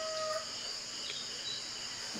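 A rooster's crow trails off about half a second in, over a steady high-pitched chorus of insects.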